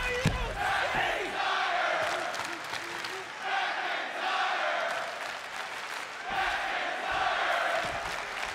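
Arena crowd at a wrestling show cheering and chanting in repeated swells, with a thud right at the start.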